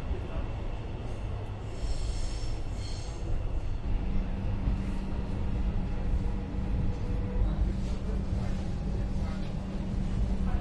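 Inside a moving suburban train carriage: the low rumble of the train running on the rails. A brief high whine comes about two to three seconds in, and a steady hum sets in about four seconds in.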